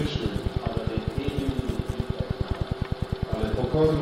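Speech from an old sermon tape recording, over a low buzz that pulses about eleven times a second.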